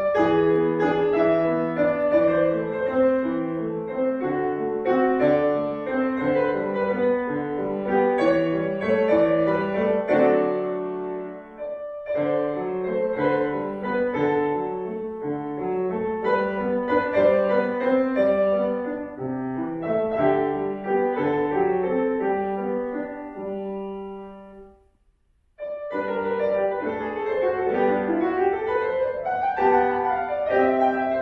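Solo grand piano playing a classical piece, with many notes overlapping. About twenty-five seconds in, the playing dies away to a brief, nearly silent pause, then starts again.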